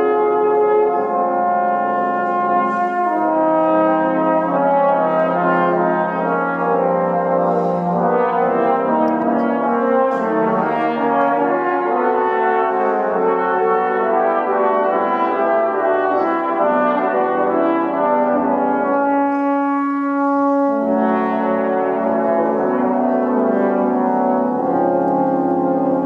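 A trombone quintet playing a held, chordal jazz-style passage, five trombones sounding close harmonies that shift together. The lower parts drop out for a moment about three-quarters of the way through, then return.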